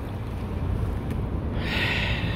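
Truck's engine idling with a steady low rumble, and a hiss starting near the end.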